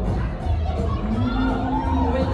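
Latin dance music with a singer and a steady beat playing over the hall's sound system, with spectators shouting and cheering for the dancing couples.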